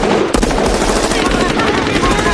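Sustained rapid gunfire from several automatic rifles, shots packed closely together in a continuous volley: a movie shootout sound effect.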